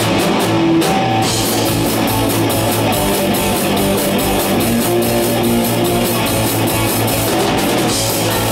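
Punk rock band playing live with distorted electric guitar, bass and a drum kit keeping a fast, steady beat, in an instrumental stretch without vocals.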